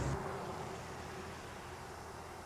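Faint, steady outdoor street ambience with a soft hiss; a low rumble fades out just after the start.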